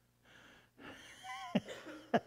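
A man laughing in breathy, wheezing gasps. It starts as airy breaths and turns into a squeaky, wavering laugh about a second in, with a sharp burst near the end.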